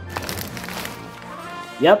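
Thin plastic poly mailer bag rustling and crinkling as it is pulled open by hand, strongest in the first second, over steady background music.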